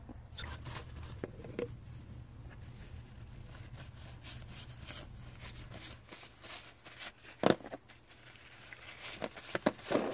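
Paper towel rustling and rubbing against plastic ink cartridges as they are wiped clean with rubbing alcohol, with a few light handling knocks, the loudest about seven and a half seconds in.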